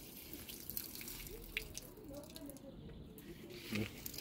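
Water from a plastic watering can's rose falling onto soil and seedlings in a pot.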